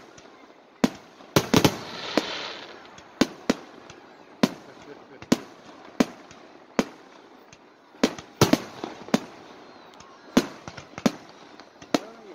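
Aerial fireworks going off: an irregular series of about twenty sharp bangs, some in quick clusters, with a brief hiss about two seconds in.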